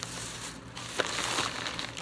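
Thin plastic shopping bag crinkling and rustling as a hand rummages in it, with sharp crackles.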